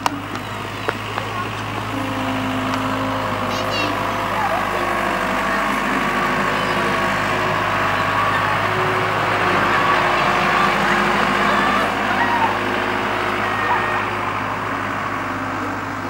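Many children's voices calling and chattering at once over a steady low hum; the voices swell toward the middle.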